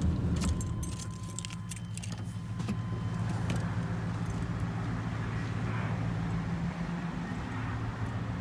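Car engine idling steadily, with keys jangling and metallic clicks during the first three seconds. A thin steady high tone sounds over the same stretch.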